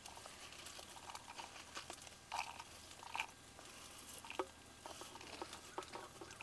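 Dried red chillies and coriander seeds being tipped from a steel plate into a stone mortar, giving faint, scattered light crackles and ticks.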